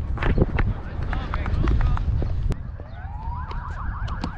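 Low rumbling noise on a helmet-mounted action camera's microphone, with scattered sharp knocks, easing off about two and a half seconds in. A faint, quickly repeating rising-and-falling tone then begins.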